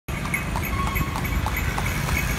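Carriage horse's hooves clip-clopping steadily on the road, about three strikes a second, over a low rumble of street traffic.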